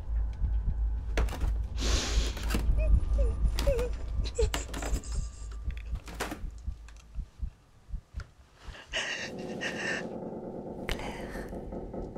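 A low, steady rumbling drone with scattered rustles, knocks and breathy sounds from a person over it; the rumble drops out about eight seconds in, and a steadier hissing, noisy bed takes its place.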